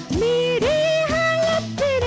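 A woman singing a Bollywood film song into a microphone, holding long notes, over an instrumental backing with a steady beat.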